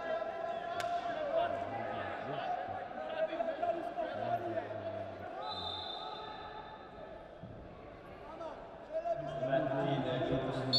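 Voices calling out in a large indoor wrestling arena, with a sharp knock about a second in. A short referee's whistle blast sounds a little after halfway as the wrestlers are brought back to the centre of the mat.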